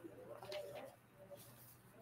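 Near silence with a few faint, brief murmured voice sounds.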